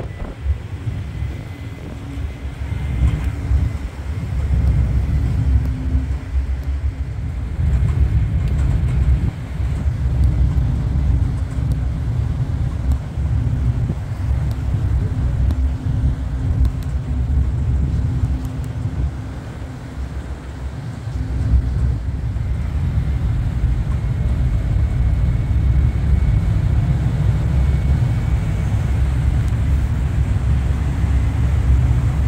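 Woolwich Ferry's engines running with a steady low rumble and hum as the vessel manoeuvres in toward the terminal linkspan, dipping briefly about two-thirds of the way through.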